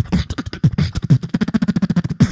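Solo beatboxing through a stage microphone and PA: rapid hi-hat-like clicks and snares over kick drums whose pitch drops. Past the middle, a held bass hum runs under fast clicks.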